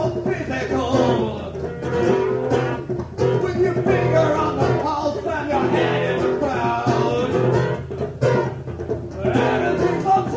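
Live audience recording of guitar with a man singing over it.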